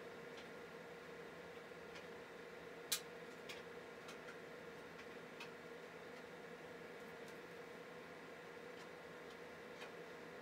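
A few scattered small clicks, one sharper click about three seconds in, from the plastic battery case being pried apart with flat-head screwdrivers, over a faint steady hum.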